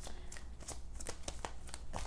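A tarot deck being shuffled by hand: a run of soft, irregular clicks of cards against each other.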